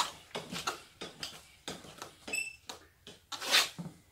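Light, irregular clicks and knocks of metal parts being handled at a mobility scooter's steering column while handlebars are fitted, with a brief squeak about two seconds in and a louder scrape or rustle near the end.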